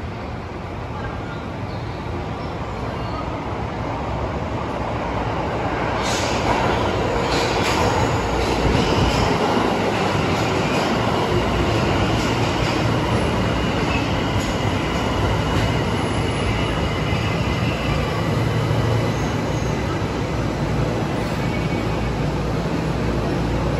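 Tokyo Metro Ginza Line 1000-series subway train running into the station, growing louder over the first several seconds. It then slows to a stop with a faint high squeal of wheels and brakes.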